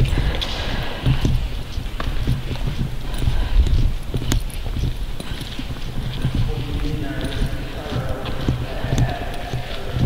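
Footsteps of people walking on concrete, a steady run of scuffs and clicks, with faint voices in the background in the second half.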